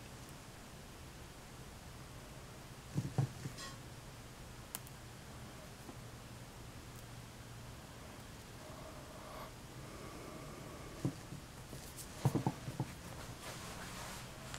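Quiet handling noises: a few soft clicks and taps, about three seconds in and again in a short cluster near the end, as small bits of debris are picked out of an engine oil pan by hand, over a low steady hum.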